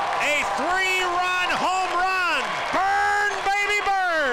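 A male baseball commentator's voice in long, drawn-out, rising-and-falling shouted calls as a hit goes fair, over faint crowd noise.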